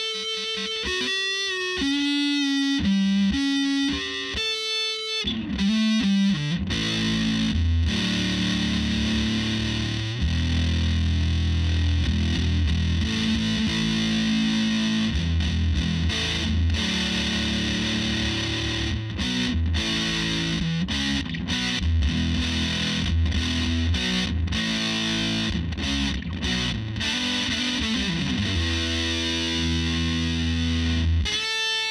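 Electric guitar, a mid-'90s Fender Stratocaster, played through a Way Huge Swollen Pickle fuzz pedal into a Fender '65 reissue Super Reverb amp. It opens with a few single sustained notes, then from about five seconds in turns to heavily fuzzed chords and riffs with a thick low end.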